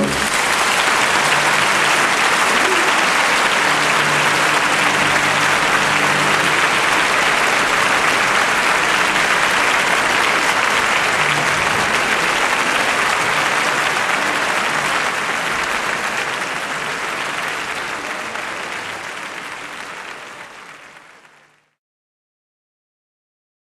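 Audience applause at the end of an operatic aria, a dense steady clapping that fades away over the last several seconds and is then cut off.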